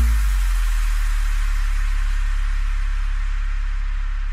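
Background music ending: the beat stops at the start and a sustained low tone with a soft hiss-like wash lingers, slowly fading out.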